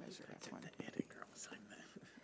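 Faint speech: a few quiet words spoken at low level.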